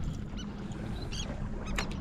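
A few short, high-pitched seabird calls, about three times, over a steady low rumble of wind and water with a faint low hum.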